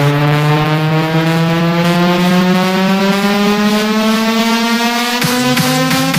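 Dutch house track: a buzzy synth tone climbing slowly and steadily in pitch as a build-up. About five seconds in, a regular kick-drum beat drops in under it, roughly three beats a second.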